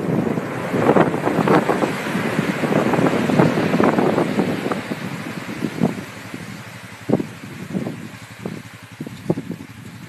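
Wind buffeting the microphone over breaking surf, heavier in the first half and easing after about five seconds.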